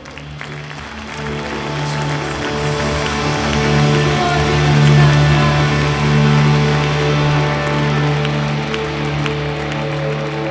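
Live church worship band of electric guitars, bass and keyboard swelling into a loud instrumental passage of sustained chords. The music grows louder over the first few seconds, peaking about halfway, with the congregation clapping over it.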